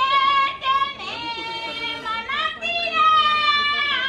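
A high voice singing long held notes, with short sliding breaks between them.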